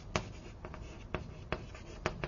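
Writing on a lecture board: several sharp, irregular taps and short strokes as letters and a diagram are put up.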